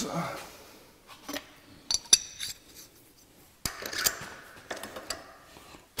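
Light metal clinks and clicks of milling-machine tooling being handled as a 5/8-inch end mill is fitted into the spindle, with a quick cluster of ringing clinks about two seconds in and a few sharp clicks in the second half.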